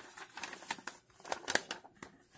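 Paper instruction manual being handled and unfolded: light rustling with a few short crisp crackles, the loudest about a second and a half in.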